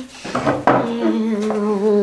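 A person humming one long steady note, a mouth-made rocket-engine sound for a toy rocket taking off. A few light plastic knocks from handling the toy come just before the note.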